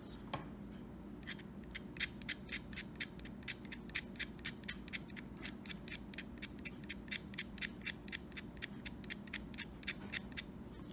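Utility knife blade scraping the lead of a pencil, shaving graphite into a cigar box guitar's nut slots as a lubricant for the strings. A quick run of short, light scrapes, about three a second, starting about a second in.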